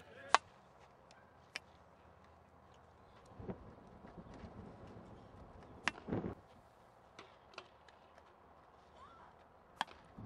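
Baseball field ambience: a few sharp knocks, the loudest about a third of a second in, with faint distant voices calling.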